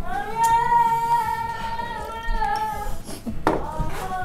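Singing: a voice holds one long, steady note for about three seconds, with a short knock and a second sung note near the end.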